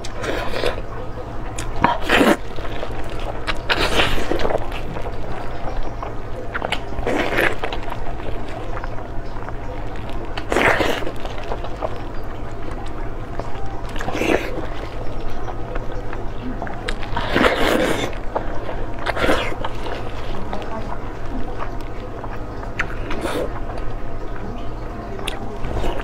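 Close-up eating sounds: wet bites, chewing and sucking on braised skin-on pork, coming in separate bursts every two to three seconds over a steady low hum.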